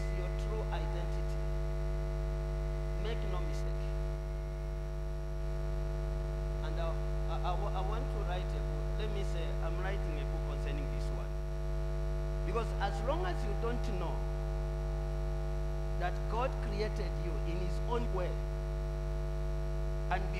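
Steady electrical mains hum from the recording or sound system, a constant low buzz made of many steady tones. Faint voices come and go underneath it.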